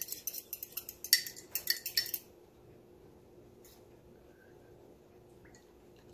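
Metal spoon clinking quickly and lightly against a small ceramic cup as buttermilk is stirred, for about the first two seconds.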